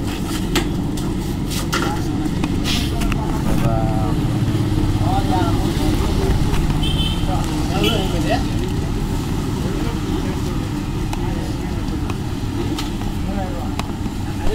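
Busy roadside street ambience: a constant low traffic rumble under background voices talking, with a few sharp clicks in the first four seconds.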